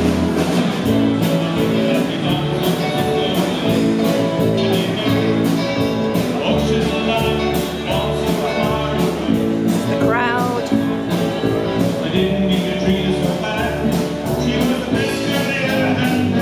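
Live band music with a steady beat, guitar to the fore and some singing, carrying across the open air; a wavering rising note stands out about ten seconds in.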